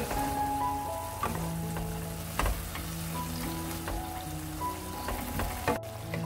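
Shredded burdock root sizzling in soy-sauce braising liquid in a frying pan as it reduces, stirred with a wooden spatula that knocks against the pan a few times.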